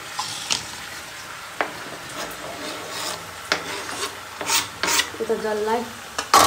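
Chopped tomatoes sizzling in a hot kadai of frying chicken and onions, while a long metal ladle scrapes and stirs against the pan several times.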